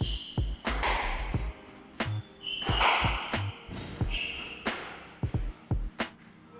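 Squash rally: the ball strikes rackets and the court walls over and over, with several short squeaks of court shoes on the wooden floor.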